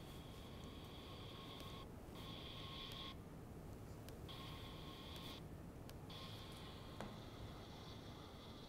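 Faint, steady high-pitched electronic whine with a weaker lower tone, cutting out abruptly and returning several times, over low room hum and an occasional faint click.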